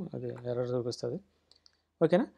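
A voice speaking for about a second, then a few faint, short clicks of computer input as code is edited.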